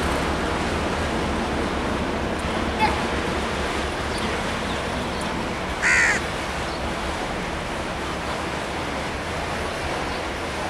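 Steady rumble of a passenger train rolling over the rails as it moves away. A crow caws loudly once about six seconds in, with a fainter call near three seconds.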